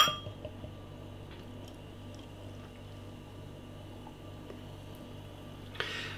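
A single sharp glass clink as a glass beer bottle's neck knocks against the rim of a drinking glass, followed by the faint, steady sound of beer being poured into the glass.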